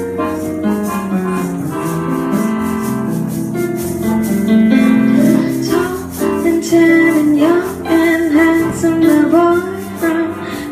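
Live bossa nova played on a piano accordion and an electric keyboard, held chords and a moving melody in a small room. From about six seconds in, a woman's voice comes in over the instruments.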